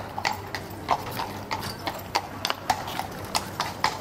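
A carriage horse's hooves clip-clopping at a walk on cobblestones, about four sharp hoof strikes a second.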